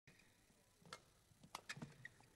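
Faint, sharp taps from a badminton rally in play: racket strikes on the shuttlecock and the players' footwork on the court, one tap just before midway and a quick cluster of three near the end.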